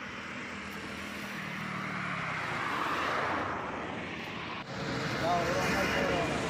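A road vehicle passing along a highway: engine and tyre noise swell to a peak about three seconds in and fade. After an abrupt cut, steady traffic noise with voices near the end.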